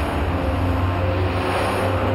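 An SUV driving along a road: a steady engine and tyre rumble.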